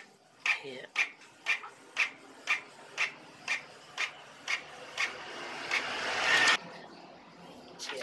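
Canon iP2770 inkjet printer printing a page: a regular click about twice a second as the print carriage passes and the paper steps forward, then a rising whir that cuts off suddenly as the sheet is fed out. It is a test print after the damaged encoder strip was replaced.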